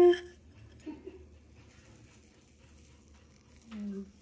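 A woman's long, held sung note that cuts off about a third of a second in, followed by quiet room tone with only faint small sounds, and a short low voice sound just before the end.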